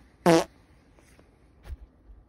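A single short, buzzy fart sound about a quarter of a second in.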